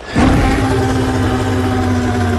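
A loud, sustained blast from a film trailer's sound mix. It starts suddenly and holds one low, steady pitch as the giant ape on screen roars.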